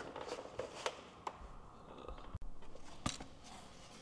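Faint handling sounds: a few light clicks and some rustling as multimeter test leads are moved from one relay pin to another.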